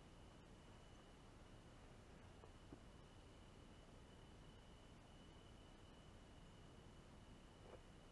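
Near silence: faint hiss with a thin, steady high-pitched tone and two faint ticks, one about a third of the way in and one near the end.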